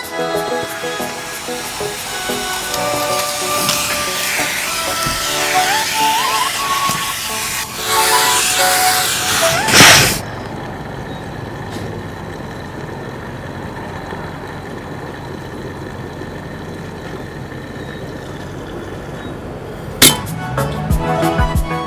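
Background music over a vacuum cleaner's suction hiss as its nozzle works over car floor carpet. About ten seconds in there is a loud rush, and the vacuum then runs on as a steady hiss with a low hum while the music fades back.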